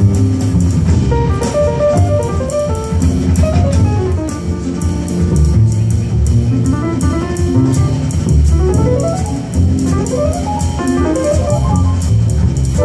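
Live jazz trio playing an instrumental passage: acoustic grand piano playing rising and falling runs over a plucked upright double bass and a drum kit keeping time on the cymbals.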